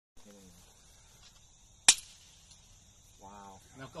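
A single suppressed shot from a Welrod bolt-action pistol in .32 ACP, heard as one short, sharp report about two seconds in, quiet for a gunshot, with only a brief tail after it.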